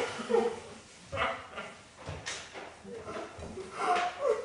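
A few short, scattered vocal sounds from people, with quiet pauses between them.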